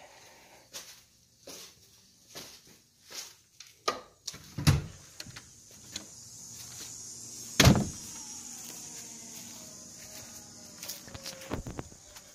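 Scattered clicks and knocks, then two loud thumps about five and eight seconds in. After the first, a steady high buzz of insects comes in.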